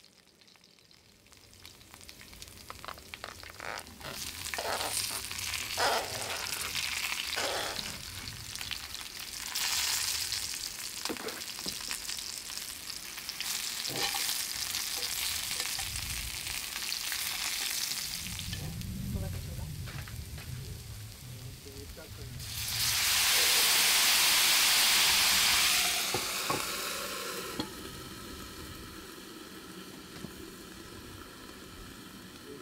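Garlic and eggplant frying in oil in an oval cast-iron skillet, with clicks and knocks as the pieces are turned with metal tongs. About 22 seconds in, a loud burst of hissing comes as a splash of liquid is poured into the hot pan to steam-fry the eggplant. The hissing lasts a few seconds, then dies down to a quieter sizzle.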